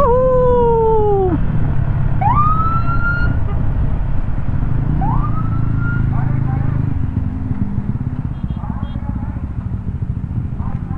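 Three short siren whoops, each rising quickly in pitch and then sliding down or holding: the first and loudest right at the start, the others about two and five seconds in. Under them runs the steady low rumble of a Yamaha scooter and the wind at road speed.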